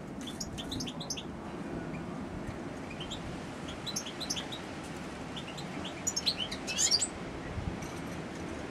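Caged European goldfinch twittering in short bursts of quick high chirps. The busiest and loudest burst comes about six to seven seconds in.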